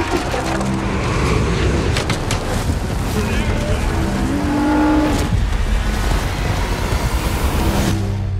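Film sound-mix of a bison herd stampeding: a dense, loud rumble of hooves with sharp cracks through it and short yells over it.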